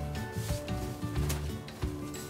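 A jamdani saree rustling as it is lifted, unfolded and flapped open by hand, with a few brief swishes of the cloth.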